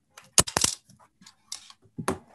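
A quick cluster of sharp clicks and clatter about half a second in, then a few fainter clicks, picked up by a computer microphone.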